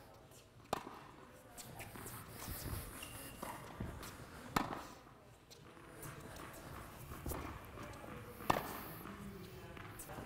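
Tennis balls struck by racquets during a volley rally in an indoor tennis hall: sharp pops, the three loudest about four seconds apart, with fainter hits and court sounds between them.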